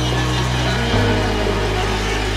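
Instrumental intro of an electronic dance track: sustained synth bass and chords, the bass note shifting about a second in.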